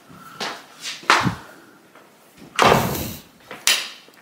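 An interior door being pulled to and shut: a few knocks, the loudest a bang a little past halfway, with another short knock just after.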